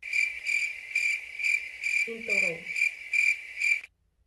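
Crickets-chirping comedy sound effect: a high, pulsing chirp repeating about three times a second. It cuts off abruptly just before the end, the stock cue for an awkward, thinking silence.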